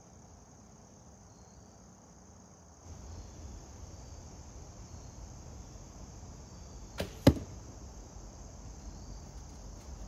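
A horsebow shot with a full-carbon arrow: about seven seconds in comes a sharp snap of the string on release, then a third of a second later a much louder thud as the arrow strikes the target. Crickets chirr steadily throughout.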